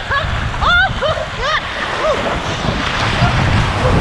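Water rushing and splashing down a water slide under an inner tube, with wind buffeting the microphone. A woman laughs and whoops in short bits during the first half or so.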